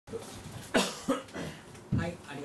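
A person coughing several times in short, sharp bursts, the first the loudest.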